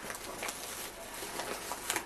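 Rustling and crinkling of a padded paper mailing envelope as a hand reaches inside and draws out a card, with a sharper crinkle near the end.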